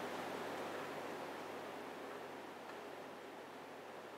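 Faint, steady hiss of room tone, slowly fading, with no distinct sound standing out.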